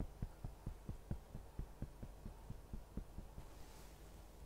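Fingertips tapping rapidly on the body for EFT, a faint, even run of dull thumps about five a second, picked up by a clip-on microphone; the taps grow fainter near the end.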